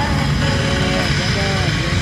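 Loud music with a heavy bass and a voice over it.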